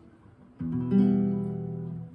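An E minor chord (022000) strummed on an acoustic guitar a little over half a second in, all six strings ringing on and slowly fading.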